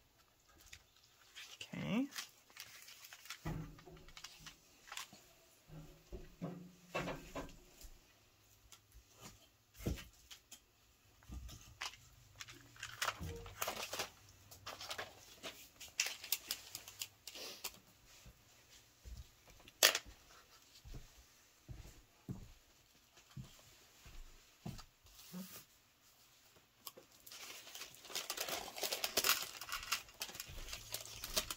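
Paper and envelope being handled on a craft mat: scattered soft rustles, taps and pencil marks on paper, with one sharp click about two-thirds through and busier paper rustling near the end.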